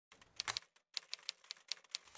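Typewriter keys striking in a quick, irregular run of sharp clicks, a typing sound effect for on-screen text being typed out.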